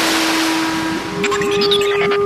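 Rushing water sound effect, a dive under the surface, that thins about a second in into bubbling, over background music with held notes.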